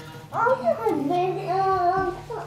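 Background music: a high voice singing a sustained, wavering melody line that starts a moment in, over a low steady tone.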